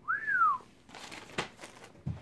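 A person whistling one short note that rises and then falls. Faint rustling follows, with a single sharp click partway through.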